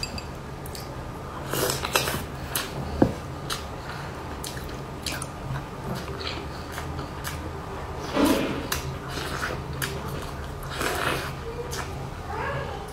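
Close-miked biting and chewing of a soft sandwich cake: wet mouth clicks and smacks throughout, with louder bites or mouthfuls about two, eight and eleven seconds in.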